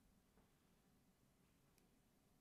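Near silence: room tone, with a faint click near the end.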